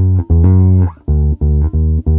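Electric bass guitar played by itself: low, plucked single notes. One note is held for about half a second, then three short notes follow at an even pace.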